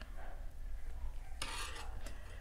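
Soft rubbing and rustling of acrylic yarn and crocheted fabric being handled with a crochet hook, with a louder swish of the fabric about one and a half seconds in.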